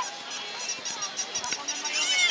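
Battery-powered novelty toys on a vendor's table making electronic chirps and squeaks: a fast, even run of short high chirps, about six a second, with a few squeaky honk-like calls.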